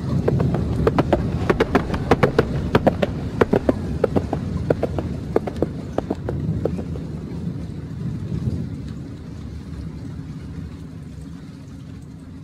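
A run of sharp, irregular knocks, several a second, over a steady low rumble. The knocks thin out and stop about seven seconds in, and the rumble slowly fades.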